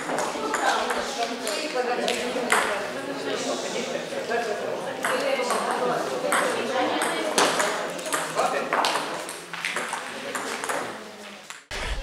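Table tennis balls clicking off paddles and tables in a rally of quick, irregular hits, over indistinct chatter of people in a sports hall.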